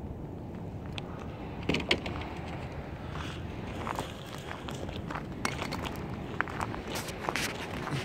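Footsteps on gravel and dirt, an irregular run of crunches with a few sharper ones about two seconds in, over a steady low rumble.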